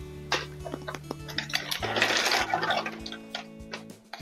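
Ice cubes rattling in a plastic ice container and clinking as they drop into a stemmed glass, with scattered clicks and a denser clatter about two seconds in. Background music plays under it.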